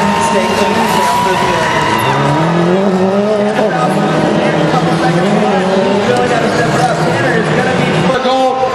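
Rally car engine revving hard as it is driven on the dirt gymkhana course, its pitch climbing and dropping repeatedly with throttle and gear changes.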